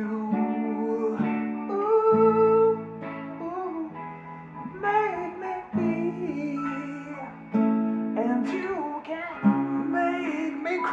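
Acoustic guitar strummed in sustained chords, with a man singing along over it in phrases.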